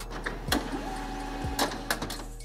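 HP Colour LaserJet 2600n starting to print a supplies status page: a few sharp mechanical clicks, then a steady motor whine of several tones that comes in under a second in and holds.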